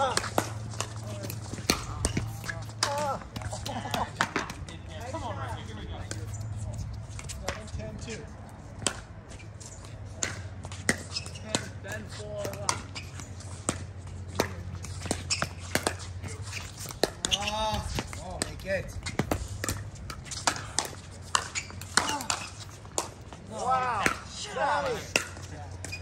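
Pickleball paddles striking a plastic pickleball in a doubles rally: sharp, irregular pops, with players' voices calling in between.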